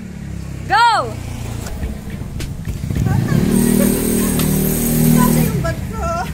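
A motor vehicle engine running close by, swelling in about halfway through, holding for a couple of seconds and fading away near the end.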